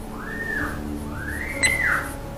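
Two whistle-like tones, each rising and then falling in pitch; the second is longer, and a sharp click comes near the end.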